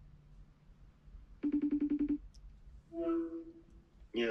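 Outgoing phone call ringing through a smartphone's speaker: one short burst of a rapidly pulsed buzzing ring tone, about ten pulses a second, about a second and a half in. A brief voice follows near the end.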